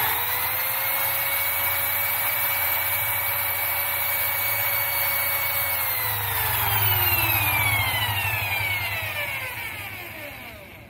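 Handheld electric drill boring a small pilot hole into wood: the motor spins up, runs at a steady whine for about six seconds, then slows, its pitch falling and fading away toward the end.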